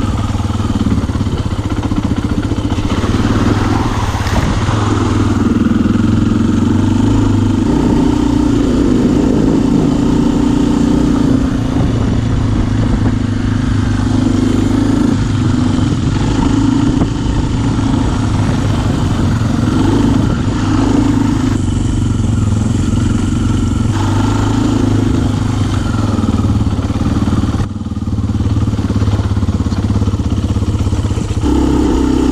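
Kawasaki KLX dirt bike's single-cylinder four-stroke engine running on the trail, heard from the handlebars, its pitch rising and falling as the throttle is worked. There is a brief drop in revs a little before the end.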